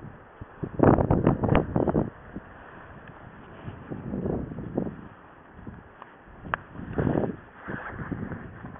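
Wind buffeting the microphone in gusts, strongest about a second in, with smaller gusts around four and seven seconds.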